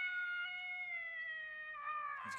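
A shrill human imitation of a wolf howl: one long held note that slowly falls in pitch and trails off near the end. It is a weak, failed attempt at a werewolf howl, "horrendous".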